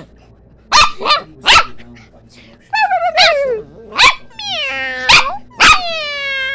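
Small dog barking in sharp, short barks, about six in all, with long high drawn-out calls that waver and glide in pitch between them.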